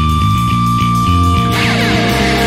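Easycore rock band playing, with electric guitars over a pulsing low riff and a high held note. About one and a half seconds in it breaks into a louder, brighter passage with a crash and falling pitch glides.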